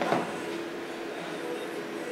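Quiet background music of held, sustained notes over steady room noise, with a brief sharp sound right at the start.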